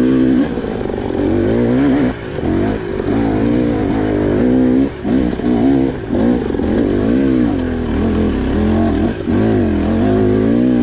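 KTM 300 two-stroke dirt bike engine revving up and down under constantly changing throttle while climbing a rocky trail, its pitch rising and falling without pause. The throttle is chopped briefly about two, five and nine seconds in.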